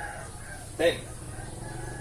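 A rooster crowing, with a brief loud vocal sound just under a second in.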